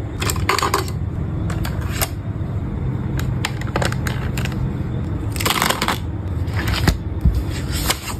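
Small hard objects clinking and clattering on a desk: ice and a glass straw knocking in a glass, then plastic marker pens rattling as they are pulled from a desk organizer. There are a handful of short clatters, the fullest about five and a half seconds in, over a low steady hum.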